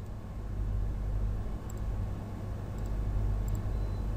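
Steady low electrical hum and hiss of the recording's background noise, with a few faint clicks.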